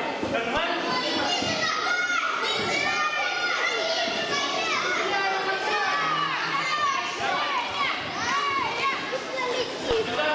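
Many children's voices shouting and calling over one another, with high calls rising and falling in pitch throughout.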